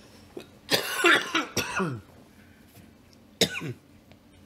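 A man coughing: a fit of several coughs about a second in, then one more short cough near the end.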